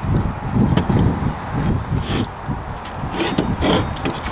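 Scrapes and knocks of a small wheel hub and tire being handled and set down on a plastic worktable, a few short rubbing strokes around the middle and again near the end, over a steady low rumble.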